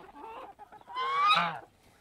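Domestic chickens calling while foraging: a soft low cluck near the start, then one louder, drawn-out hen call about a second in that rises slightly in pitch.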